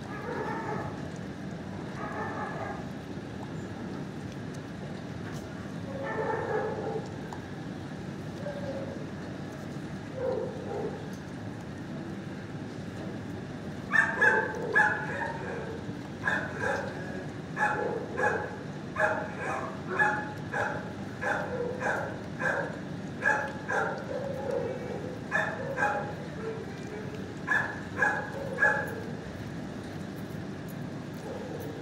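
Dog barking repeatedly in a shelter kennel, a few scattered barks at first and then a steady run of short barks at about two a second from about halfway through.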